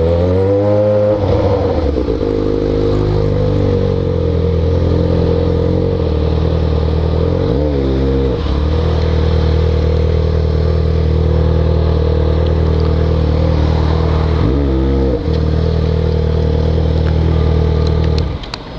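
Yamaha XJ6 inline-four motorcycle engine with an open, de-baffled exhaust, heard while riding. The engine note rises in the first second, then holds a steady cruise. It dips briefly and climbs back twice, about eight and fifteen seconds in.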